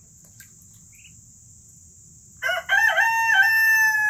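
A rooster crowing once, starting a little past halfway: one long call in several stepped parts.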